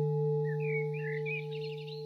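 A struck singing bowl ringing out: a steady low hum with several higher overtones, slowly fading. Faint bird chirps are heard over it.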